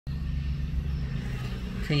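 A steady low mechanical hum, with a man's voice starting with one word just at the end.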